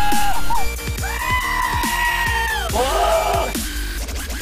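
Goat screams edited over an electronic dance track with a steady kick-drum beat, standing in for the vocals: one scream ends about half a second in, a long held scream runs from about one second to nearly three, then a short wavering bleat follows.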